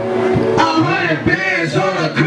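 A rapper's voice through a microphone over a loud hip hop backing track played on a club sound system.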